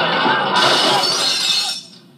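A crash sound effect of shattering glass bursts in about half a second in, over the music and commotion of a comedy radio bit, and dies away near the end. It is played back from a cassette through a mini stereo's speakers.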